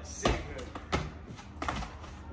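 Several dull thumps of a person landing a parkour jump on concrete walls, shoes and hands striking the concrete, about three knocks spread over two seconds.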